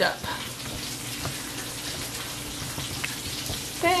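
Steady background hiss with a faint low hum, and a couple of light knocks from the camera being handled and moved.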